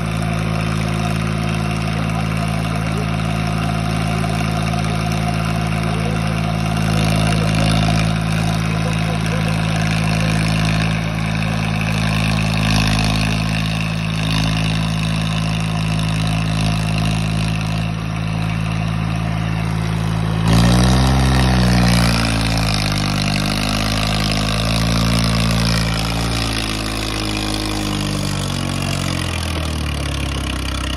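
Swaraj 855 tractor's three-cylinder diesel engine running under heavy load, hauling a fully loaded paddy trolley, at a steady pitch. About two-thirds of the way through it suddenly gets louder and the pitch swings before settling, as the tractor strains hard enough to lift its front wheels.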